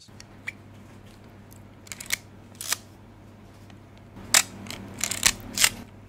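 Leica MP rangefinder's mechanical cloth focal-plane shutter and controls clicking: a few light clicks, then a sharp, loud shutter click about four seconds in, followed by a quick cluster of clicks near the end.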